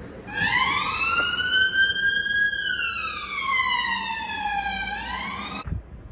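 Emergency vehicle siren on a slow wail: the pitch rises, falls back over a couple of seconds and starts to rise again before it cuts off suddenly.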